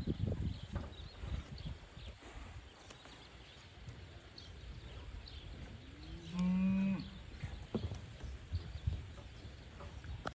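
A single moo from feedlot cattle about six seconds in: one short call that rises and then holds, under a second long. Otherwise only faint low rumble and a few soft knocks.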